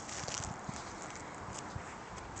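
Footsteps crunching on gravel, irregular steps with a few louder crunches in the first half.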